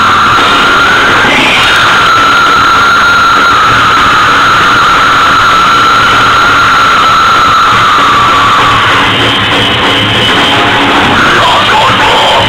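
A heavy rock band playing live, loud and heavily distorted, with a high note held over the din until about nine seconds in.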